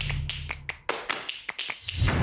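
Title-card sound effect: a run of sharp, irregular clicks, about six a second, over a low droning bass tone that fades away.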